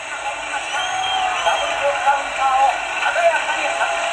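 A fight commentator's voice from a boxing anime's soundtrack, calling a knockdown and a sharp double counter-punch, over a steady background.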